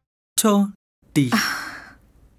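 A person's brief vocal sound about half a second in, then a long sigh that starts in the voice, falls in pitch and trails off into breath.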